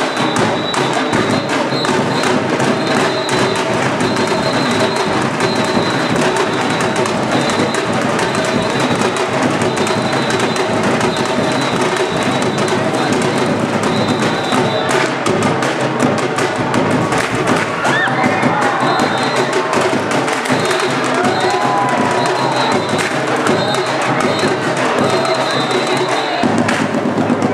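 A troupe of stick drummers playing live on stage, a dense, unbroken drum rhythm, with the audience cheering.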